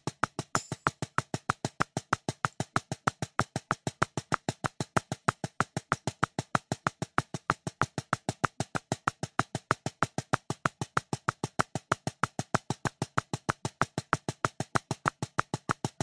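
Drumsticks playing even single strokes in a rebound warm-up exercise at 190 BPM, about six crisp hits a second with no break.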